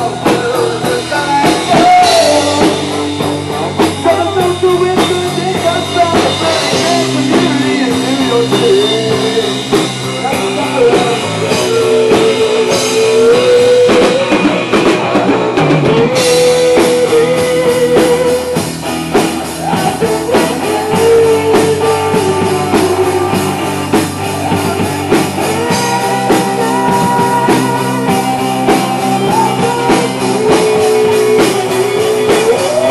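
Rock band playing live, with a drum kit and guitars carrying a steady driving beat.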